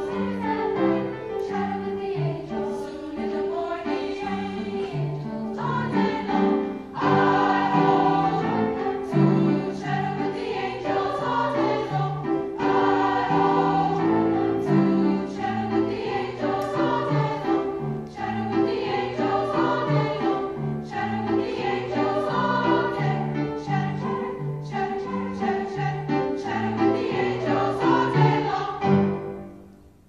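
Youth choir singing together with grand piano accompaniment. The music stops near the end.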